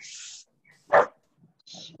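A single short, loud dog bark about a second in, after a brief hiss.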